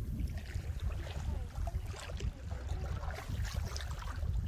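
Wind noise on the microphone, with small waves lapping and trickling against the rocks at the water's edge and a few faint clicks.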